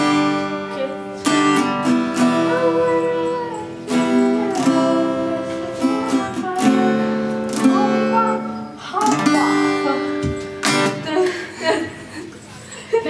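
Acoustic guitar strummed in chords, with a strong strum about every two and a half seconds; the playing dies away just before the end.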